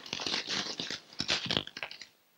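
Paper crinkling and rustling in irregular crackles as an envelope and letter are opened by hand.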